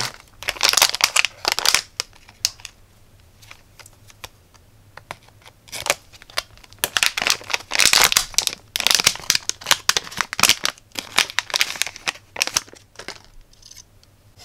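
A metallized anti-static plastic bag crinkling as it is handled and opened. There are bursts of crinkling about a second in, then a longer, denser run in the second half.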